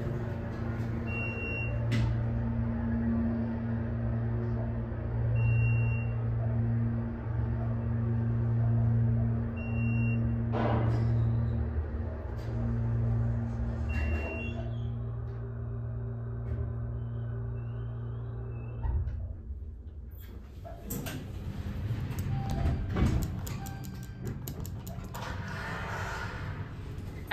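Hydraulic elevator running upward: a steady low hum from the pump motor, with short high beeps about every four seconds and a few clicks, stops about 19 seconds in as the car arrives. Then rattling and sliding from the elevator doors.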